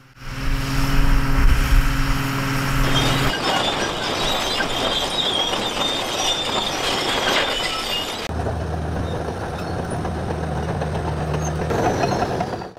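Large diesel crawler bulldozers running in three successive recordings. A steady engine hum gives way abruptly about three seconds in to a noisier stretch of machine and ground noise with a faint high whine. About eight seconds in, that changes abruptly again to a lower, steady engine hum.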